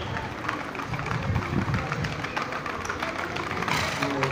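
Shod hooves of several Peruvian Paso horses clattering on cobblestones in a quick, irregular patter, over a murmur of voices.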